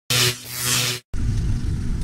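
A short, loud intro sound effect under the logo card: a noisy sweep with a low hum that swells twice and cuts off about a second in. After a brief gap comes a steady low rumble with wind on the microphone aboard an open boat.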